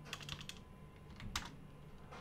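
Computer keyboard keys clicking faintly as text is typed. There is a quick run of keystrokes in the first half second, then one more a little after halfway.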